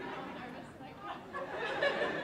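Indistinct chatter of several voices talking at once, growing louder toward the end.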